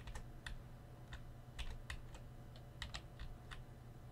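Faint clicks of computer keyboard keys being pressed, about a dozen irregular taps over a low steady hum.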